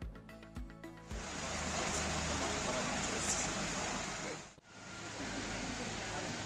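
A beat-driven music sting ends about a second in, giving way to a steady outdoor background noise. The noise drops out for an instant a little past the middle and then returns.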